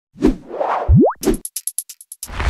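Logo-intro sound effects: a thump, a whoosh, a quick rising tone, then a rapid run of short high ticks.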